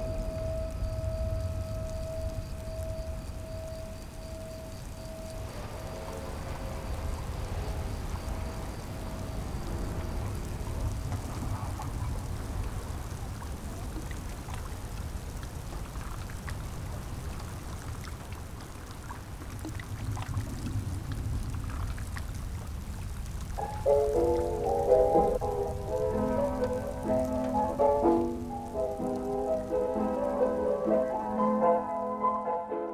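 Film soundtrack: a low rumbling ambience with a faint patter like rain falling on water, under a held musical tone that fades out about five seconds in. Near the end, a melody of short notes comes in and gets louder.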